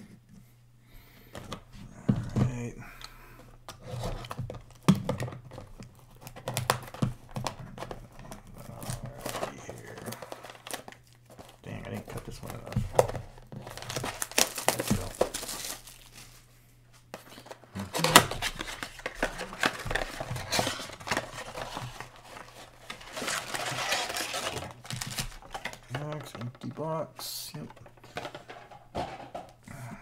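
Plastic wrapping crinkling and tearing as a sealed cardboard box of football trading cards is unwrapped, in several rustling stretches with small clicks and handling knocks, followed by the box's cardboard flap being pulled open.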